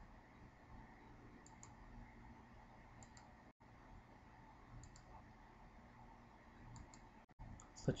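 Faint computer mouse-button clicks, each pair a press and release, coming every second or two as nodes are placed one by one along a traced outline. They sit over a low, steady background hum.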